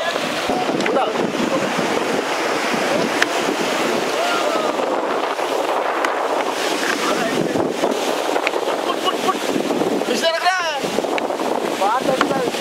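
Surf washing and breaking around a small fishing boat as it heads out through the waves, with wind buffeting the microphone. A voice calls out briefly near the end.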